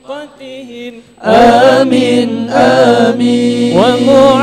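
Men chanting sholawat, Arabic devotional praise of the Prophet, with a melismatic, wavering melody. A single quiet voice comes first, then about a second in several voices join loudly together.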